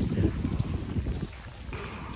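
Wind buffeting the phone's microphone: a low, uneven rumble that eases off a little over a second in.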